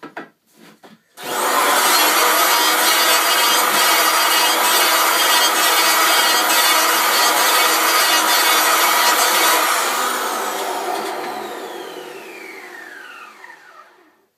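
Handheld electric power planer starting up about a second in, after a few light knocks, and running steadily as it planes a maple cue-shaft blank. Near ten seconds in it is switched off, and its whine falls in pitch as it winds down over the last few seconds.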